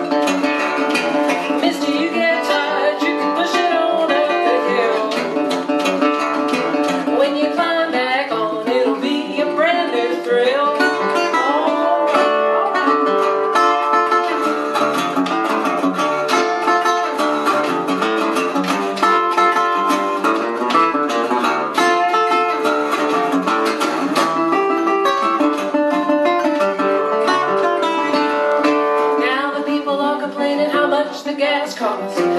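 Fingerpicked blues and ragtime on a metal-bodied resonator guitar: a busy instrumental passage of plucked notes over a steady bass line, with a few bent notes about eight to ten seconds in.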